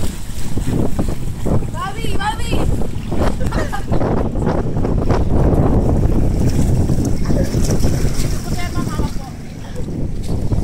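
Wind buffeting the microphone over lapping, splashing sea water, with excited voices of people in the water coming through a few times.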